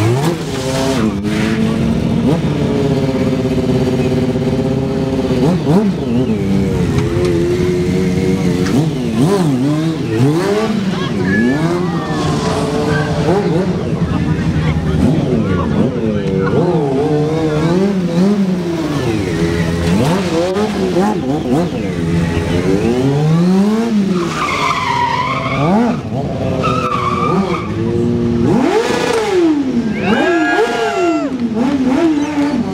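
Sport motorcycle engine revved hard during stunt riding, its pitch climbing and dropping again and again as the throttle is opened and closed.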